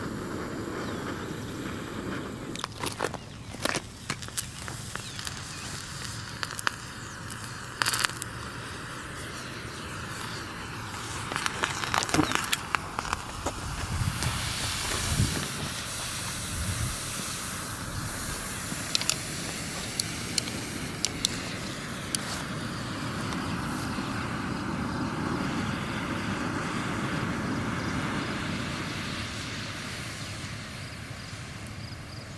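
Ochre (partially hydrated iron oxide) thermite burning in a terracotta flower pot: a steady hiss and crackle with scattered sharp pops, at its loudest and busiest about twelve to fifteen seconds in.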